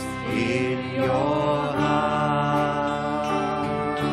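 Live church worship band: voices singing a song over guitar accompaniment, with long held notes.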